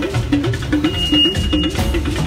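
Live church band playing a fast praise groove: electric bass guitar and drum kit driving a quick repeating riff, with a high held tone for about a second near the middle.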